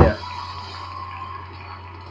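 Steady background noise, a constant low electrical hum with a faint hiss, and no distinct events.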